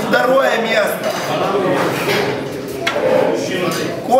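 Men's voices talking in a large hall with reverberation, and a single sharp click about three seconds in.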